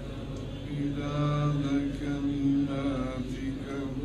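Men's voices chanting a devotional prayer on the Prophet (salawat) in long, held notes that step up and down in pitch, as a lesson's closing prayer.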